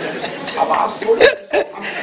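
Chuckling laughter in short breathy bursts, mixed with a few half-spoken words.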